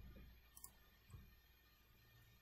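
Near silence: faint room tone with a single soft computer-mouse click about half a second in.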